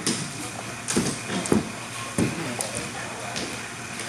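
A few scattered knocks and footsteps on a wooden floor, with brief voice sounds among them.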